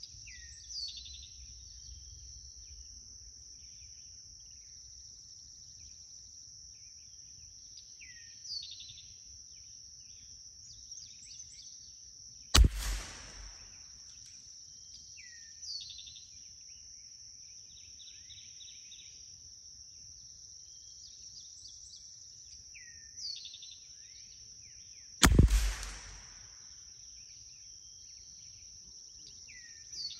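Two .22 LR rifle shots about 13 seconds apart, heard from down range at the target, each a sharp crack with a short ringing tail. Between them a steady high insect drone and a bird repeating a short falling call every seven seconds or so.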